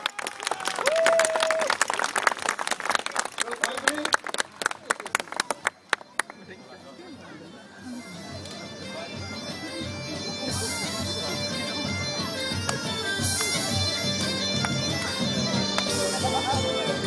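A crowd applauding for about six seconds. After a short lull, bagpipe music starts and grows steadily louder.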